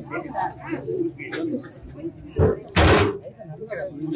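Voices of people talking in the background, then a loud, sudden clatter about two and a half seconds in, lasting about half a second.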